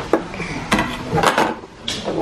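Hard plastic balls and parts of a baby's ball-drop toy knocking and clattering, a series of sharp knocks through the two seconds.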